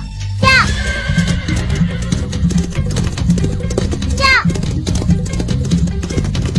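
A horse whinnying twice, briefly, about half a second in and again about four seconds in, over background music with a steady beat.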